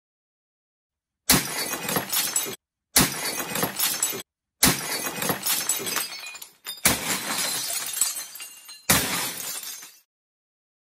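Ceramic dinner plates smashing: five separate crashes, each a sudden loud hit trailing off over about a second, several stopping abruptly.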